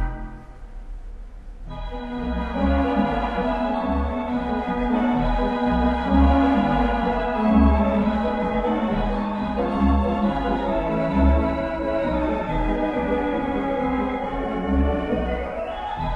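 A hybrid pipe-and-digital theatre pipe organ, a Möller unit orchestra, playing music. It opens softly, then about two seconds in the full organ comes in with sustained chords over bass notes in a steady rhythm.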